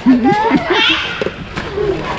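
Voices of a man and children calling out excitedly, without clear words.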